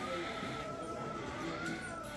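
A thin, high-pitched squeal held steadily for about two seconds, rising slightly in pitch about one and a half seconds in, over the general noise of a store.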